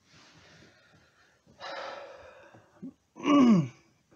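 A man smoking a tobacco pipe: soft breathy puffs, then a louder exhale about a second and a half in. Near the end comes a loud voiced sigh that falls in pitch.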